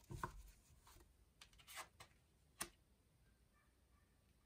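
Tarot cards being handled and laid on a cloth-covered table: a few faint soft taps and rustles, with one sharper click about two and a half seconds in.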